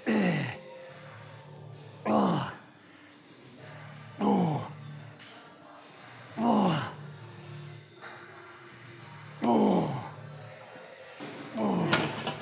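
A man groaning with effort on each rep of a seated chest press: six loud groans that fall steeply in pitch, about every two seconds with one longer pause midway. A steady low hum fills the gaps.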